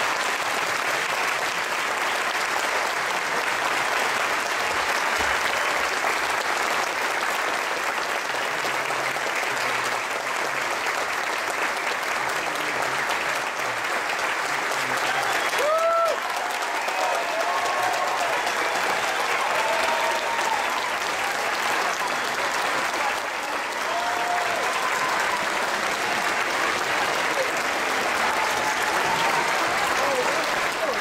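A large audience applauding steadily, with a few short calls rising above the clapping from about halfway through.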